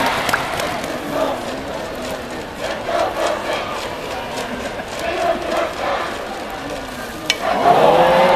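Stadium crowd noise with voices and chanting from the stands. Near the end a single sharp crack, the metal bat meeting the pitch, and the crowd noise swells right after.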